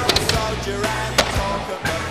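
Music soundtrack: a song with drum hits and sustained instrument tones.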